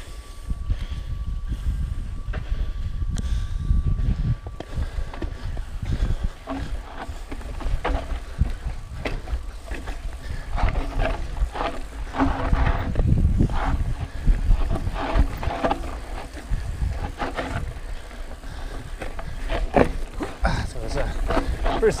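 Ibis Mojo HDR 650 mountain bike descending a dirt singletrack: a constant low rumble of wind and trail noise on a chest-mounted camera, broken by frequent rattles and knocks from the bike over roots and ruts.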